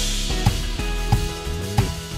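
Drum kit played along to a pop backing track: a cymbal crash rings out at the start over sustained chords and bass, then sparse hits land about every two-thirds of a second alongside a steady tick.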